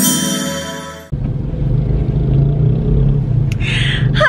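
A chiming intro jingle fades out over the first second, then a car's steady low road and engine rumble inside the moving cabin takes over, with one short click near the end.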